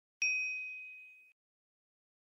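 A single bell-like ding sound effect: one bright, high strike that rings and fades for about a second, then cuts off abruptly.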